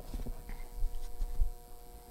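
Dull wooden knocks and low thumps as large wooden cut-out pieces are handled and fitted together on a display stand, the strongest about halfway through and again near three quarters of the way, over a steady faint electrical hum.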